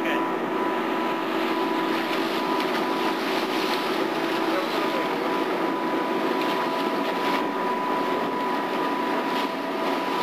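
Tugboat's engines and deck machinery running steadily: a constant drone with a steady high whine through it.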